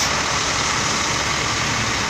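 Coach bus running as it moves slowly across a wet lot, heard as a steady, even noise with no clear pitch.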